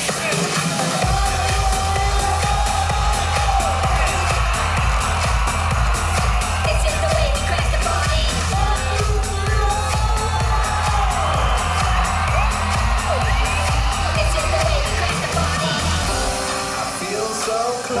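Electronic dance music played loud over a festival sound system, driven by a pulsing bass line, with a crowd cheering and whooping over it. The bass line drops out about two seconds before the end.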